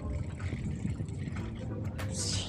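Low, steady rumble of wind buffeting the microphone while riding a folding bicycle outdoors.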